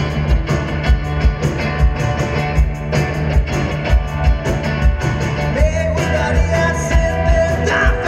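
A live rock band playing: electric guitar and bass over a steady drumbeat. Over the last couple of seconds, a voice comes in singing one long held note.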